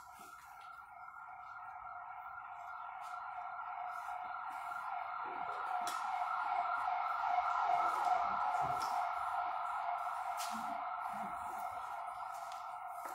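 A siren from a passing emergency vehicle, wavering quickly. It grows steadily louder to a peak about eight seconds in, then begins to fade as the vehicle moves away.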